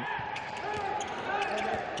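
Indoor handball arena sound: a steady murmur of the crowd in the hall, with a handball bouncing on the court as the attack restarts.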